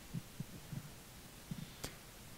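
Quiet room tone with a few faint, soft low thumps spread through it and a short click near the end.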